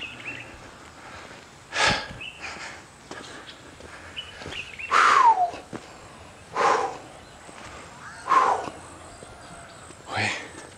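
A person breathing hard while climbing a steep footpath: four loud, heavy exhalations about one and a half to two seconds apart, the second with a falling, voiced sigh.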